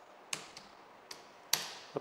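Computer keyboard being typed on: three sharp key taps spread over about a second and a half as a short word is entered into a spreadsheet cell.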